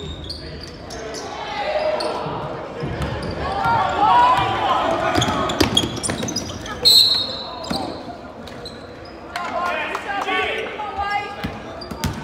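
Indoor basketball game: a ball bouncing on a hardwood court with scattered sharp impacts, and spectators' and players' voices echoing in a large gym. A short high referee's whistle sounds about seven seconds in, before play stops for a free throw.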